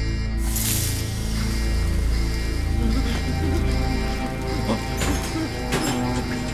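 Tense film score built on a deep sustained drone with held tones above it. A short rushing whoosh comes about half a second in, and a couple of sharp hits sound near the end.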